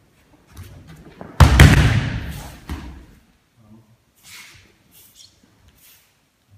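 A body landing on tatami mats in an aikido breakfall: a sudden loud thump about a second and a half in, then rustling that fades over about a second and a smaller thud.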